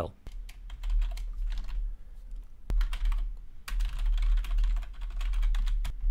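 Typing on a computer keyboard: two runs of rapid key clicks with a pause of about a second and a half between them, and a low rumble beneath the keystrokes.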